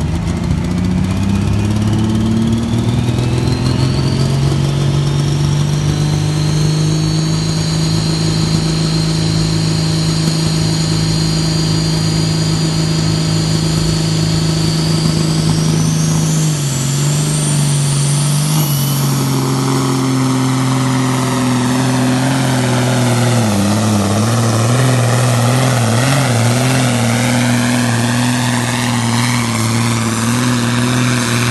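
A diesel pulling tractor at full power, dragging a weight-transfer sled down the track with its engine running loud and steady. A high whine climbs in pitch over most of the first twenty seconds. The engine note drops about two-thirds of the way through, sags and wavers, then holds as the load comes on.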